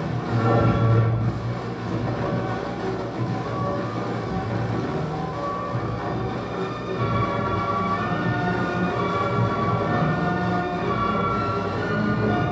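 Live experimental electronic music through a PA loudspeaker: a dense drone of many held tones layered over a low hum. Higher tones come in more clearly in the second half.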